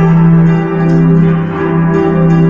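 Digital keyboard played with both hands: a held low note runs steadily under changing chords and melody notes.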